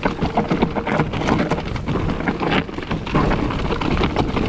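Orbea Rise trail e-mountain bike descending a loose, rocky trail: a constant crackle of tyres crunching over stones and the bike rattling over the bumps.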